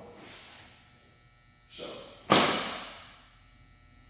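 Taekwondo form movements: a brief swish at the start, then a rushing swish and a sudden sharp snap a little after two seconds, the loudest sound, trailing off over most of a second, as a strike or kick snaps the uniform.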